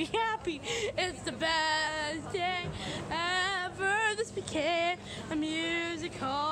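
A female voice singing short, wavering phrases, ending on a steadier held note near the end.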